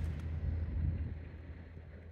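Low, steady rumble of wind on the microphone, fading toward the end.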